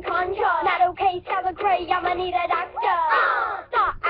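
A child's voice singing over a backing track, from a pop music video playing back.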